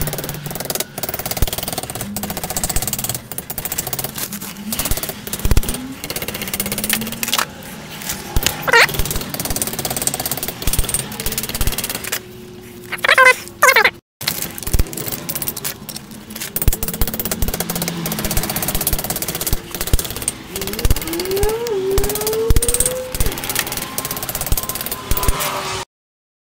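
Hammer tapping a strip of flat steel around a round steel form to bend it into an even curve, a long run of quick metallic taps, with a few short whistle-like sliding tones in the background.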